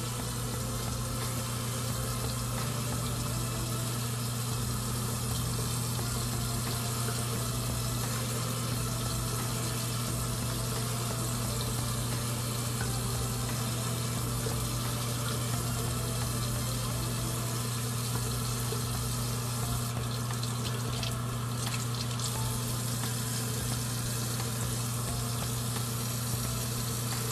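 Water running steadily from a bathroom tap: a continuous, even rushing hiss with a steady low hum under it.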